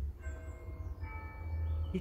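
Church bells ringing: two strokes on bells of different pitch, about a second apart, each ringing on with a steady tone.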